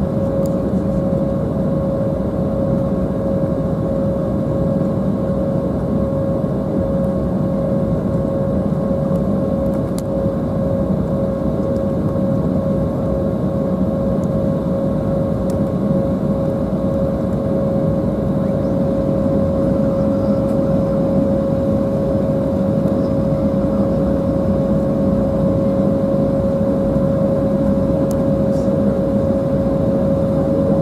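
Cabin noise inside an Embraer 190 taxiing after landing: a steady hum from its engines at taxi power and the cabin ventilation, with one clear steady pitched tone running through it.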